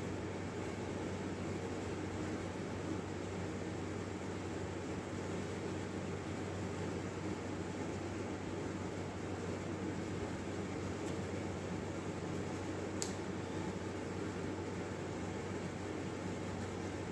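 Steady background hum and hiss of a room, like a running fan or air conditioner, with one faint click about thirteen seconds in.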